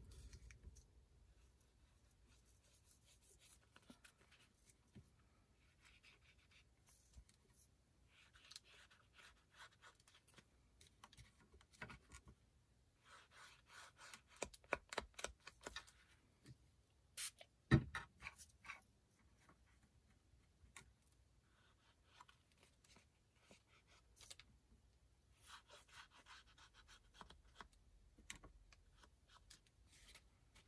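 Faint scratchy rubbing of fingertips working Inka Gold metallic paste onto the edges of an embossed paper card, in short spells of a second or two. A sharp click and knock come a little over halfway through.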